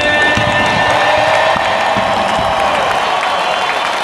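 A large stadium crowd cheering and applauding at the close of a sung national anthem. The singer's final note over the public-address system fades out in the first moment.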